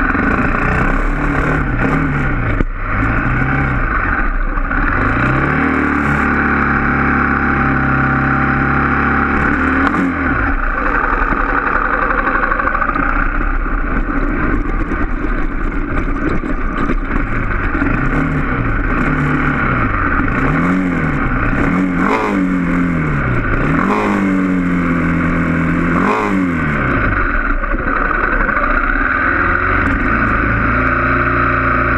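Trail motorcycle engine being ridden over a dirt trail, its revs rising and falling again and again every second or two as the throttle is worked, with a steady stretch about a third of the way in and a single sharp knock near the start. Near the end it settles to a steady run.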